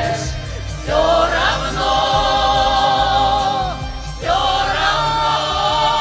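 A Russian folk choir of men's voices and a female soloist singing over instrumental accompaniment. The phrases are long held notes, breaking off briefly about a second in and again about four seconds in.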